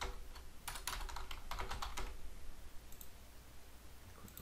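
Typing on a computer keyboard: a quick run of keystrokes over the first two seconds, then quiet keys over a low steady hum.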